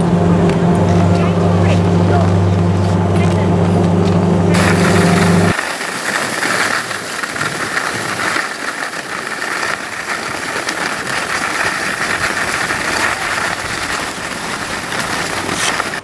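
A steady low mechanical hum that cuts off suddenly about five seconds in, followed by a steady rushing noise.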